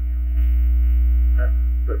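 Low steady hum on the meeting-room audio feed, swelling suddenly about half a second in and easing off near the end.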